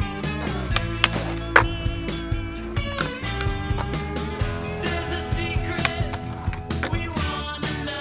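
Music track with skateboard sounds mixed in: several sharp clacks of the board in the first two seconds, the loudest about one and a half seconds in, and wheels rolling on concrete.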